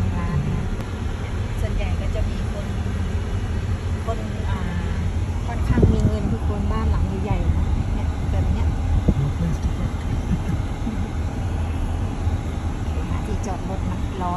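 Steady low rumble of a car driving slowly, heard from inside the cabin, with faint voices in the background.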